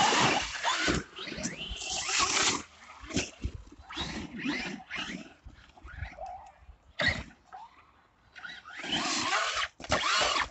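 Brushless electric motors of Traxxas RC monster trucks whining in short bursts that rise and fall as the throttle is worked, with a quieter spell about eight seconds in. Near the end a truck lands in a muddy puddle and its tyres churn through the water.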